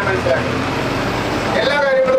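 A man speaking into a microphone stops for about a second and starts again near the end. In the gap a steady rushing noise of road traffic carries on, with a low hum underneath.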